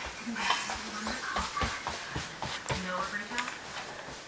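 Footsteps on a wooden floor: a quick run of light thuds and knocks, with a small child's short wordless vocal sounds in between.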